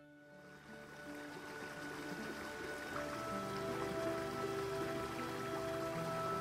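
Background music fading in: slow, held notes that change to a new chord about halfway through.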